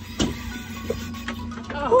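Steady low rumble and hum of an idling boat engine, with a single knock about a quarter second in. Near the end a person's voice rises into an excited "woo" as the fish is being fought.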